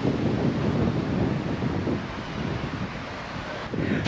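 Wind blowing on the microphone: an uneven low rushing noise that rises and falls.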